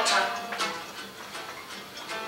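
Acoustic guitar strummed in a country song. A man's sung word ends just after the start, then the guitar carries on alone, more quietly, with a few strokes.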